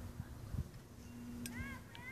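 Low thumps of handling noise on a phone microphone as it is swung upward, over a faint steady low hum. A voice says "dang" near the end.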